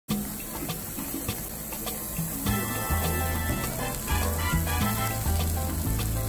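Beef slices sizzling on a gas-fired yakiniku grill, under background music whose bass line comes in strongly about two and a half seconds in.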